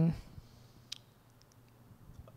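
A voice trailing off at the start, then near silence with one faint click about a second in.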